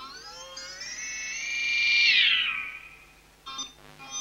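Amplified electric guitar sustaining a note that glides up in pitch, holds high, then slides back down and fades, with two short stabs of sound near the end.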